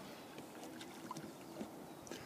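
Faint water sounds of dogs paddling in a lake: light lapping and small splashes, with a few soft ticks.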